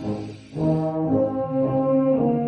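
Military wind band playing live in a concert hall: a brief break about half a second in, then loud held brass chords that move from note to note.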